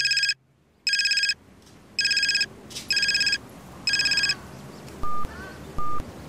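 Mobile phone ringtone: five short, trilling rings about once a second, followed by two short single-pitch beeps near the end.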